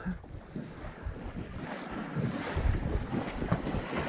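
Wind buffeting the microphone over the steady rush of moving river water, with irregular low gusts.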